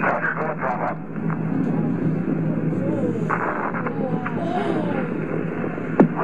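Archival Space Shuttle Challenger launch footage playing through a classroom loudspeaker: a steady rushing noise with a low hum, and brief radio voices near the start and about halfway through.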